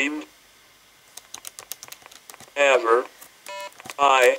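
Scattered light clicks, like keys being tapped. About two and a half seconds in comes a short voice-like sound, and just after it a brief electronic beep.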